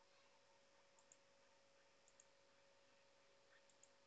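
Near silence: faint room hiss, with a few soft computer mouse clicks coming in pairs, about one, two and nearly four seconds in.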